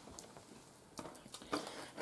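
Quiet handling noise with a few faint, short clicks, the clearest about a second in, from hands handling small jewelry-making pieces.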